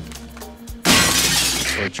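Glass shattering: a sudden loud crash about a second in that lasts about a second, over background music.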